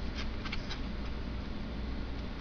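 A few light, irregular clicks in the first second, over a low steady hum.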